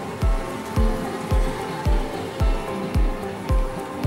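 Background music with a steady low beat, about two beats a second, under sustained melodic tones.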